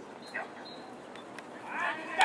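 Distant shouted calls of a male voice: a short call about a third of a second in, then a longer, louder call with a rising and falling pitch near the end.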